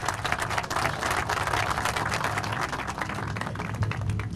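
Crowd applause: many hands clapping together without a break, thinning near the end.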